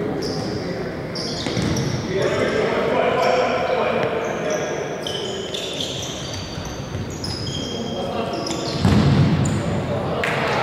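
Futsal match in a large echoing sports hall: players shouting, the ball being kicked and bouncing, and many short high squeaks of shoes on the floor. A loud thud comes about nine seconds in.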